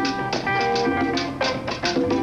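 Live Latin mambo band playing: sustained melody notes from horns and strings over bass, driven by steady, sharp percussion strikes.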